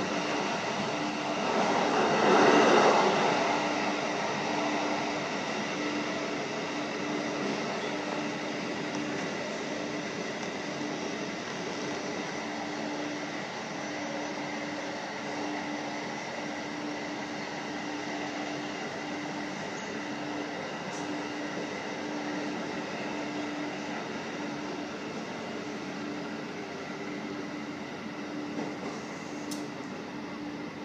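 711-series electric multiple unit running along the line, heard from inside the driver's cab, with a steady hum that pulses about once a second. About two seconds in there is a louder rush as it crosses a level crossing, and the running noise eases toward the end as the train runs into a station.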